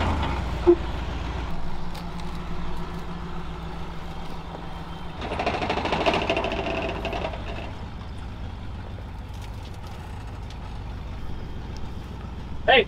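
Ford tow truck's engine running steadily at idle. About five seconds in, a louder whine with hiss rises for about two seconds and then fades.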